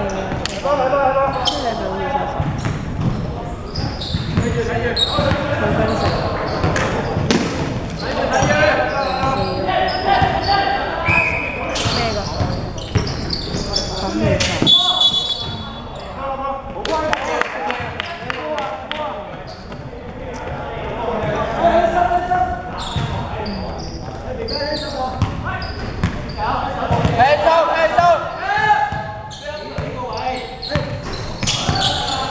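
A basketball being dribbled and bouncing on a hardwood gym floor during play, with players calling out indistinctly, echoing in a large sports hall.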